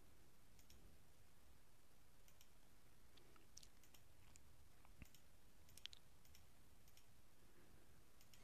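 Near silence with a faint background hiss and a few scattered small sharp clicks, the loudest about six seconds in.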